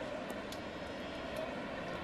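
Steady ballpark background noise between commentary: an even, low roar with no distinct events.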